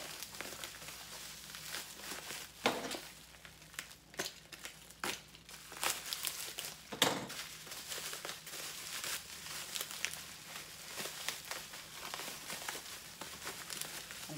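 Plastic packaging crinkling and tearing as it is unwrapped by hand, an irregular crackle with a few louder rips.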